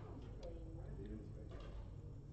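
Backgammon checkers clicking lightly as they are picked up and set down on the board, with one sharp click about half a second in and softer ones later.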